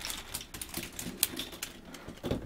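Plastic K'nex calculator mechanism clicking and clattering as golf balls run through its tracks and flippers: a fast, irregular string of sharp clicks.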